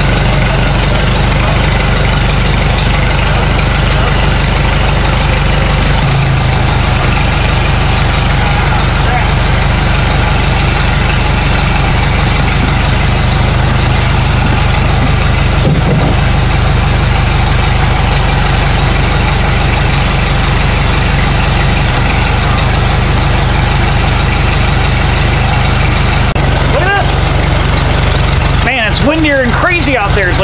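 Ford AA doodlebug tractor's four-cylinder Model A flathead engine running steadily at idle, its note changing about six seconds in, with wind noise over it.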